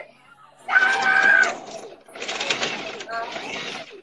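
Loud, excited voices: a high, held cry about a second in, then a longer, harsher outburst of shouting.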